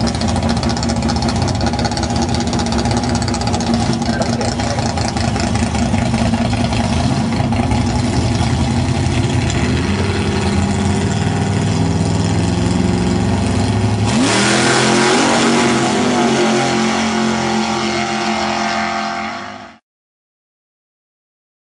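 Drag-racing gasser engines running loudly at the starting line. About fourteen seconds in, the engine sound changes abruptly and rises in pitch as the cars launch down the strip, then slowly fades and cuts off suddenly near the end.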